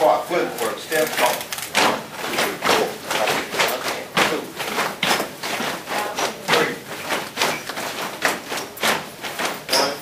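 Many dancers' feet stepping and stomping on a hard floor, a string of uneven thumps about twice a second, with people talking over it.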